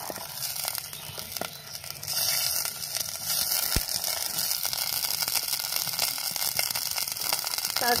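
Peas and carrots sizzling in hot oil in a clay pot as they are dropped in by hand; the sizzle grows louder about two seconds in and again a little after three seconds.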